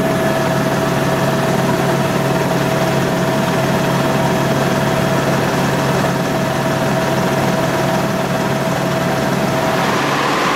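Helicopter cabin noise in flight: a steady, loud engine and rotor drone with a constant whine above it.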